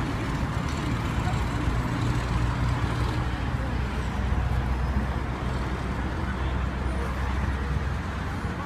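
Steady low rumble of road traffic, a motor vehicle engine running nearby.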